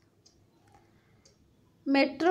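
A pause in a woman's speech: near silence with a few faint small clicks, then her voice starts again just before the end.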